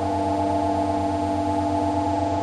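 Electronic drone music: several sustained steady tones layered over a low hum that pulses rapidly, about ten times a second, unchanging throughout.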